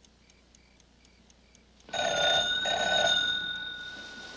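A clock ticks faintly and steadily, and about two seconds in a telephone bell rings once. The ring comes in two quick pulses, then rings out and slowly fades.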